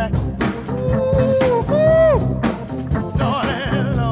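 1967 soul-jazz rhythm and blues recording with organ, guitar and drums keeping a steady beat, and two long held notes in the middle.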